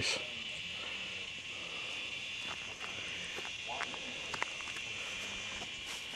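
Insects chirring steadily in the woods, a high, even drone with no break.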